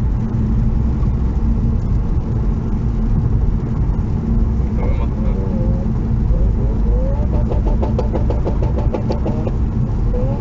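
A car being driven at speed, heard from inside a car's cabin: a steady, heavy engine and road rumble. A voice comes in from about halfway, and a quick run of short clicks follows between about seven and nine seconds in.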